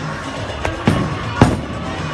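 A bowling ball is released and hits the lane. There are three sharp knocks; the loudest, about one and a half seconds in, is the ball landing. Steady background music plays throughout.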